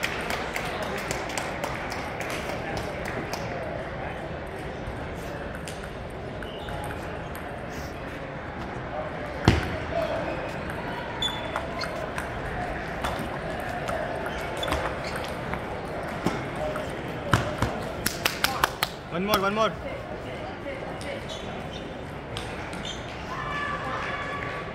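Table tennis ball clicking off paddles and the table, over the steady hubbub of a large hall full of matches and voices. One loud knock about nine seconds in, and a quick run of hits, a rally, near the end, with a short shout just after.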